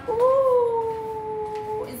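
A woman's voice holding one long drawn-out note, like a sung or cheering 'ooooh', for about a second and a half, sliding slightly down in pitch before breaking off.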